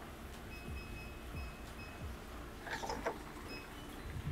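Digital door lock sounding a string of short, high electronic beeps as it is operated, followed shortly before three seconds in by a brief mechanical burst, typical of the lock's bolt releasing.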